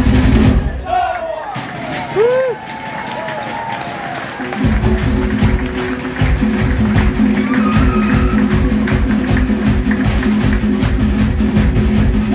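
Fast Polynesian drum music with a steady beat that breaks off about a second in; in the gap voices give short shouted calls, and the drumming starts up again a few seconds later.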